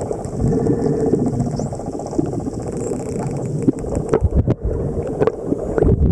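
Underwater sound at a camera swimming among spinner dolphins: a steady low rush of water moving around the microphone, with scattered sharp clicks throughout.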